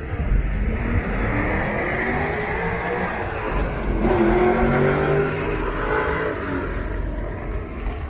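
Mercedes-Benz 500 SEC's V8 revved through its dual exhaust. The revs climb over a couple of seconds and fall back, then a second, louder rev starts sharply about four seconds in.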